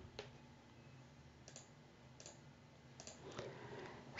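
Faint computer mouse clicks, about five spread over a few seconds, against a near-silent room tone with a low hum.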